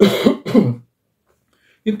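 A man clearing his throat, two short rough bursts near the start.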